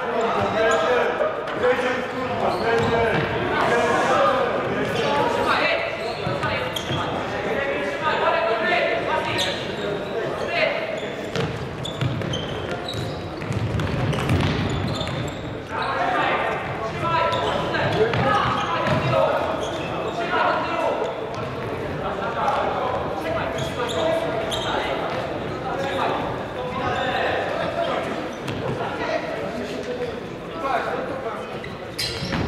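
Indoor futsal play in a large, echoing sports hall: indistinct players' shouts and calls, with repeated knocks of the ball being kicked and bouncing on the wooden floor.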